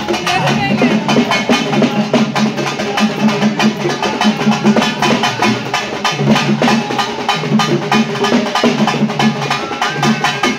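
Fast, steady drumming on a pair of stick-played folk drums, a dense run of strokes with a repeating low pitched figure under it, and voices mixed in.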